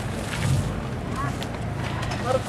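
Outdoor street ambience: a low steady rumble with wind on the microphone, and faint voices about a second in.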